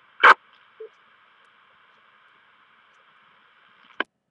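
FM radio receiver tuned to a 224.100 MHz repeater: a short loud burst of squelch-tail noise as the transmission ends, then a faint steady hiss of the repeater carrier hanging on with no one talking. The hiss cuts off with a click when the repeater drops.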